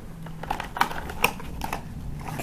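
Cardboard party hats being handled, giving a few short, sharp crinkles and clicks over a faint steady low hum.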